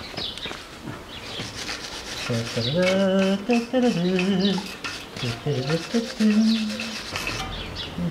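Brass wire brush scrubbing rust off a bicycle sprocket, a scratchy rubbing that goes on throughout. A man's voice makes wordless sounds over it from about two to seven seconds in.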